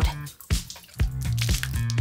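Cola dripping from an upturned bottle past a rolled-napkin stopper that fails to seal it, a few sharp drips, over background music.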